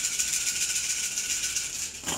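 A handful of cowrie shells shaken in cupped hands, rattling steadily and densely, as they are mixed before being cast for a cowrie divination reading.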